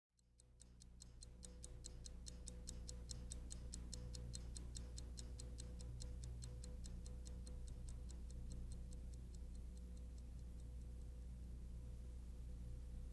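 Fast, even clock ticking, about five ticks a second, over a low steady hum; the ticks fade away in the last couple of seconds.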